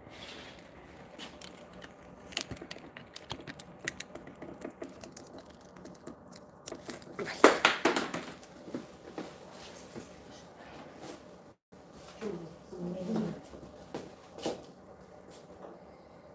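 Handling noise from a recording phone being moved and set up: scattered clicks and taps, with a louder rustle about seven and a half seconds in and a brief cut-out of the sound a few seconds later. A faint voice speaks briefly near the end.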